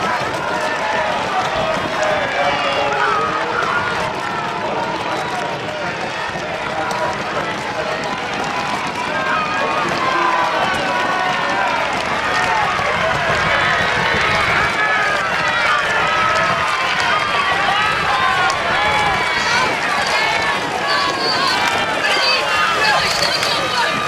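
Crowd of spectators shouting and cheering on a rowing race, many voices overlapping, growing somewhat louder about halfway through.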